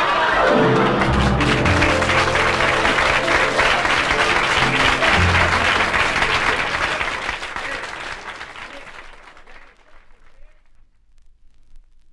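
Live audience applauding, with laughter at the start, over a short closing musical flourish. The applause fades out about nine seconds in.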